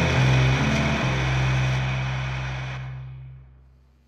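Shoegaze rock band's distorted electric guitar and bass holding a final chord that rings out and fades steadily away to near silence, closing a track.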